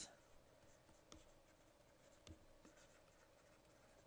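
Near silence, with a few faint ticks of a stylus writing on a tablet screen, about a second in and again a little after two seconds.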